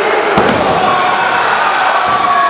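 A single heavy thud on a wrestling ring about half a second in: a body or stomp hitting the canvas-covered boards. A hall crowd murmurs and calls out underneath.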